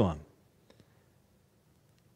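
A man's voice trails off at the very start, then a near-silent pause in a small room, broken by two faint clicks a fraction of a second apart.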